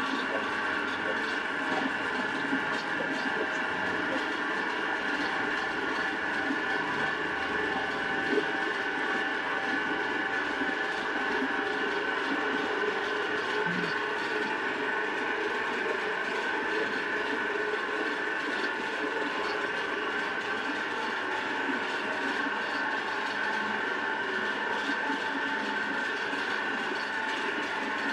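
Electric motor driving a large flywheel and a second motor through V-belts, running at a steady speed with a constant whine made of several steady pitches.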